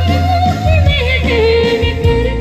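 Live band music: a woman sings a long, wavering melody line that steps down in pitch about halfway through, over keyboard and steady bass accompaniment.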